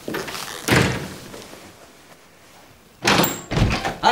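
A wooden door being opened, with two loud clunks close together about three seconds in.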